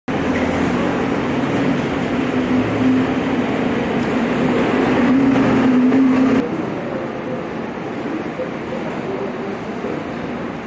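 Bus engine running close by with a steady low hum. It cuts off suddenly about six seconds in, leaving quieter background noise.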